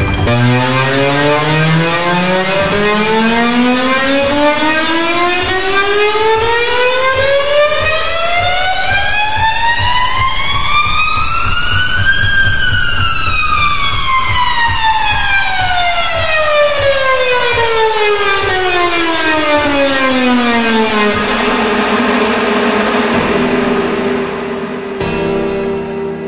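Black MIDI played through a piano soundfont: millions of densely packed notes merge into one sweeping tone with many overtones. It rises smoothly for about twelve seconds, then falls for about nine, and gives way near the end to a quieter held chord of a few notes.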